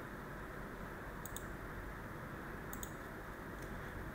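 Computer mouse clicks: two quick pairs, a second and a half apart, over a steady low background hiss.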